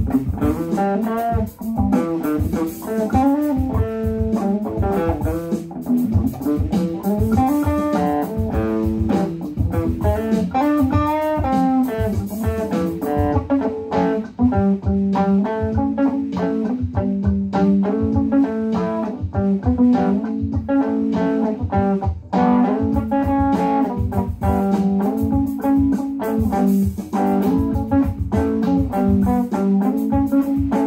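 Electric guitar, Stratocaster-style, played in a bluesy jam of moving note lines and riffs over a programmed drum backing track.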